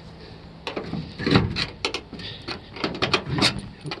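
A run of irregular knocks and clicks from a junked car being handled, like latches, panels and the glove box being worked, starting under a second in and going on for about three seconds.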